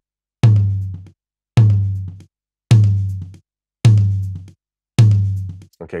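A recorded tom drum, soloed and looped, struck five times at an even pace of about one hit a second; each hit is a low, pitched tone that rings out and fades before the next. It is played back as a before-and-after of an API-style channel-strip EQ on the tom: lows below about 80 Hz cut, a dip near 700 Hz for head flap, and boosts at 100 Hz, 5k and 10k.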